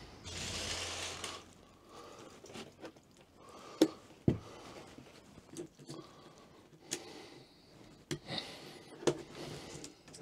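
A rustle of curtain fabric being pulled, then several sharp separate clicks as popper (press) studs are snapped onto their screw-in studs.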